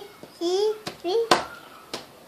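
A toddler's paint-covered hand slapping down on paper on a tabletop, about four sharp slaps. Between them she makes two short rising vocal sounds.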